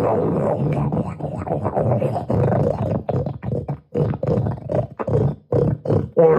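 A man's harsh, gravelly vocalizing in uneven bursts with short breaks, sung through a microphone into a portable speaker.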